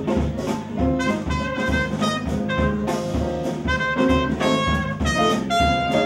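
Live jazz band: a trumpet playing a melodic line of held and moving notes over drums with a steady beat.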